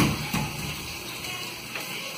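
A knock, then the steady rush of water flowing through a reef aquarium sump.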